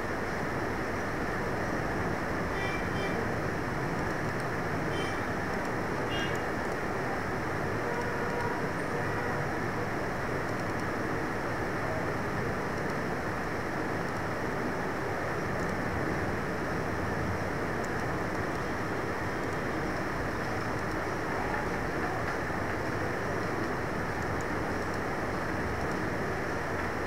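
A steady hiss and rumble of background noise at an even level, with a few faint short tones about three to six seconds in.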